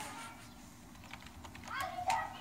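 Computer keyboard keys being typed, a few separate clicks in the second half. A voice is heard briefly near the end.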